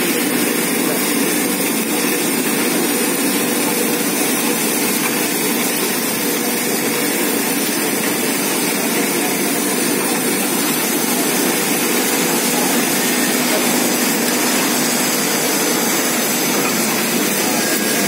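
CPVC pulveriser running steadily under load, grinding CPVC plastic into fine powder, a loud, even machine noise with no change throughout.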